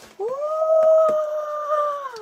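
A dog giving one long howl that swings up at the start, holds a steady pitch and falls away at the end.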